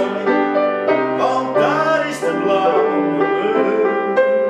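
A grand piano being played, with chords and melody notes changing about every half second.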